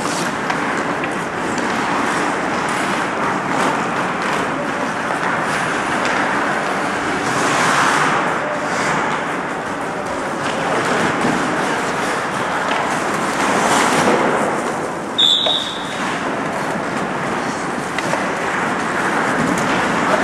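Ice hockey play in a rink: a steady wash of skate blades scraping the ice with scattered clacks of sticks and puck, and a short high whistle blast about fifteen seconds in.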